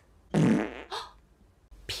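A single fart-like, buzzy rasp lasting about half a second, followed by a brief hiss.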